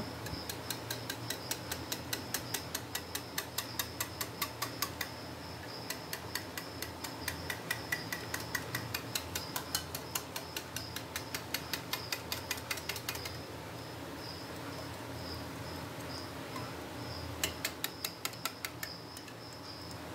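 Wire balloon whisk beating gram flour and water batter in a ceramic bowl: rapid rhythmic clicking and tapping of the wires against the bowl, about four strokes a second. The beating is meant to work out every lump. It pauses for a few seconds past the middle, then starts again briefly near the end.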